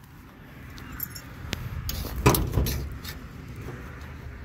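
Metal clicks and a small rattle, then a loud clunk and smaller knocks a little past halfway, as the hood of a 1966 Ford Fairlane is unlatched and raised.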